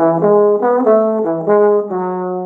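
Bass trombone playing the close of a fast bebop line in A major in the low register: a run of short separate notes stepping up and down, then a final note held from near the end.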